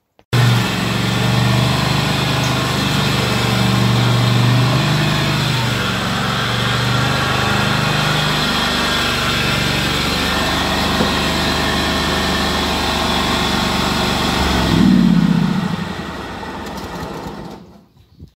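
Countax ride-on mower's engine running steadily while being driven. About fifteen seconds in it rises briefly in pitch and falls back, then drops quieter near the end.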